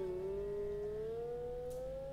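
Siddha Veena (Indian slide guitar) holding a single plucked note that glides slowly upward in pitch, a meend, while it fades.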